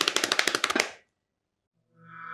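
A fast rattling clatter of sharp clicks, about fifteen a second, that fades out about a second in. Music with a held low note begins near the end.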